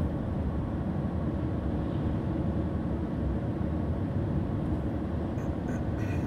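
Steady in-cabin noise of a Mercedes-Benz Sprinter van cruising at highway speed, mostly a low rumble of engine, tyres and wind.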